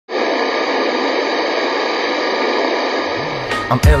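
Steady static hiss, like a detuned TV or radio, used as an intro effect. About three and a half seconds in it cuts out and a hip-hop beat starts, with rapping beginning just after.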